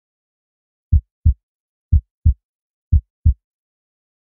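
Heartbeat sound effect: three low double thumps, lub-dub, about one a second, starting about a second in.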